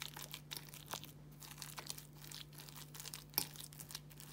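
Metal fork stirring soft mashed potatoes and milk in a bowl: irregular light scraping and clicking of the fork against the bowl, with one louder click near the end.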